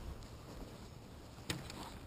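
Faint low wind rumble on the microphone, with one sharp click about one and a half seconds in.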